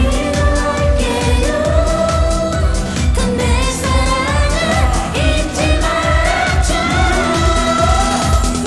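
Live pop song: a woman sings the lead into a handheld microphone over a backing band with a steady, driving beat.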